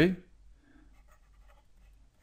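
Faint scratching of a stylus writing on a drawing tablet.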